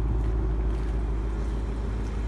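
2016 Ford Mustang GT's 5.0-litre V8 idling steadily through its dual exhaust, an even low-pitched sound with no change in engine speed.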